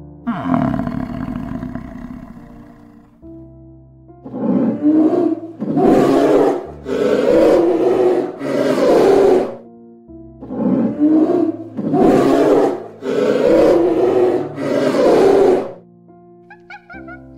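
A large animal roaring: a first call that falls in pitch just after the start, then eight loud roars of about a second each in two runs of four, over soft background piano music.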